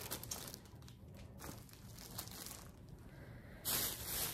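Faint crinkling and rustling of a plastic-wrapped vinyl tablecloth package being handled and set down, with a short louder rustle near the end.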